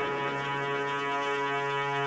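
Sustained electronic drone holding one steady chord with no beat, the ambient intro bed of a house music mix.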